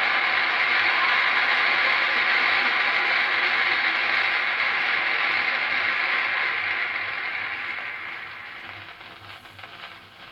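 Playback of the record's ending on the turntable: a dense, even rush of noise with no words, steady at first and then fading out over the last three seconds.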